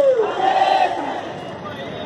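A crowd of protesters shouting a slogan in unison, the drawn-out voices falling in pitch at the start and held again about half a second in before tailing off.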